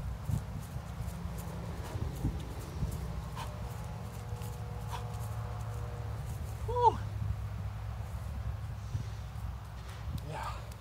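Quick, irregular thuds and shuffles of feet and knees on grass during fast plank knee drives, with hard breathing, over a low rumble. About seven seconds in there is one short voiced exhale or grunt, the loudest sound.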